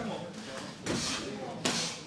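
Voices in a hall with two short, sharp noisy bursts, about a second in and again near the end, from fighters grappling and striking on a cage mat.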